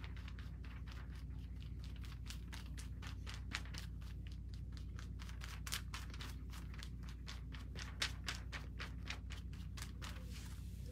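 Soft-bristle tint brush stroking hair colour onto hair laid over a backing sheet: a run of quick brushing scratches, about three or four a second, over a low steady hum.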